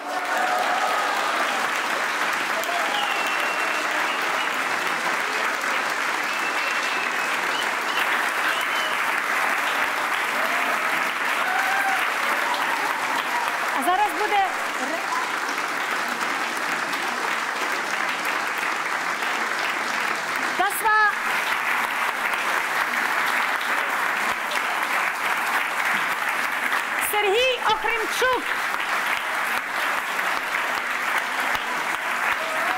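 Concert audience applauding steadily, with a few voices shouting out over the clapping: once about halfway through, once about two thirds of the way through, and twice near the end.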